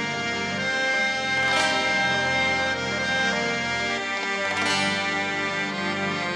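Live instrumental ensemble playing a fusion of Indian semi-classical and Western music, led by the held reedy tones of harmoniums, with the melody moving in steps between sustained notes. A bright stroke comes about a second and a half in and again near five seconds.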